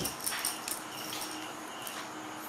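Faint, thin, high-pitched squeaks from a baby macaque, with a few soft clicks scattered through.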